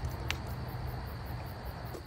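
Outdoor campfire ambience: a low steady rumble with a thin steady high-pitched drone above it, and one sharp crackle about a third of a second in.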